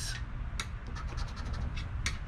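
A coin scraping the coating off a scratch-off lottery ticket in quick, irregular repeated strokes, uncovering one number square.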